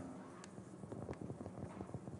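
Faint, irregular light taps in a quiet room, a few scattered knocks over low background hiss.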